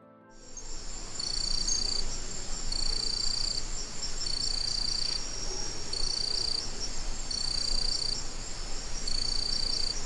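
Crickets chirping: a steady high-pitched chorus that starts abruptly just after the start, with a louder trill repeating about once a second.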